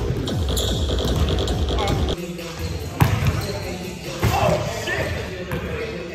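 Background music for the first two seconds, then live gym sound: a basketball bouncing on a hardwood court, with sharp bounces about three and four seconds in.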